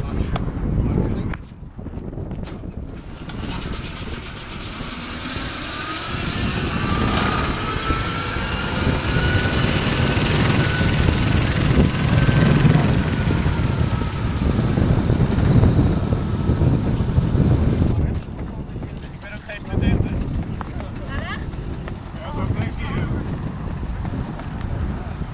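Whirring of a wind-powered car's ducted turbine rotor and drivetrain as it is pushed off and gets rolling, with a faint gliding whine. The whir builds over several seconds, holds, then drops away suddenly near the end. Voices around it.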